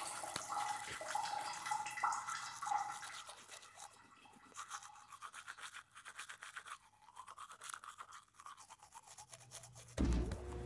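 A person brushing their teeth with a toothbrush: quick, rapid scrubbing strokes, louder for the first few seconds and fainter after.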